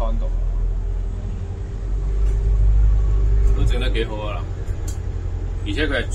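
Inside a moving double-decker bus: a steady low rumble of engine and road with a faint even hum, swelling for a second or so in the middle.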